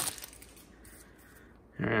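The foil wrapper of a hockey card pack crinkles briefly as it is pulled open. The crinkling fades to a faint rustle, and a man's voice comes in near the end.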